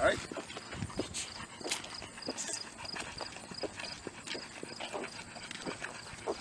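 Footsteps of several people walking on an asphalt street, sandals and boots making irregular slaps and scuffs. A faint high-pitched chirp repeats about three times a second behind them.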